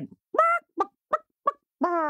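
A woman imitating a hen's clucking with her voice: five short, high-pitched clucks, the last one longer and lower.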